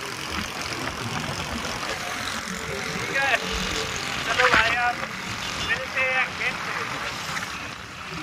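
Steady road and traffic noise, with a few short voice sounds about three, four and a half, and six seconds in.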